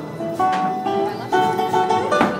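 Flamenco guitar playing: plucked pitched notes broken by sharp strummed chords a few times.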